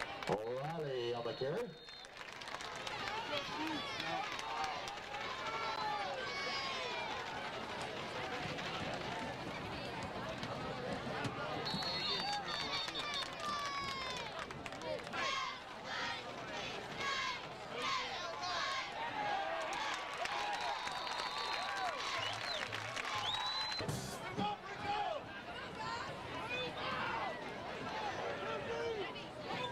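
Crowd of spectators at a football game talking at once, many overlapping voices close by, with a few brief high steady tones.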